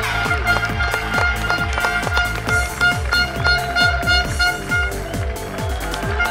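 Electronic dance music with a steady, fast kick-drum beat under held synth tones.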